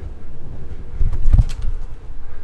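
Low handling rumble and a few light clicks, with one dull thump about a second and a half in, as the wooden door of an under-sink cupboard is swung open.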